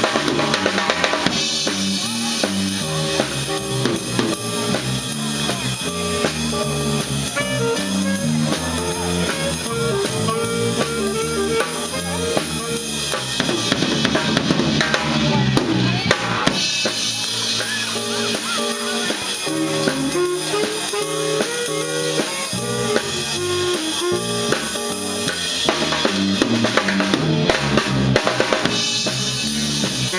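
A school jazz band playing live, with saxophones, electric guitar, keyboard and drum kit, the drum kit standing out. The drumming gets denser and splashier for a few seconds about halfway through.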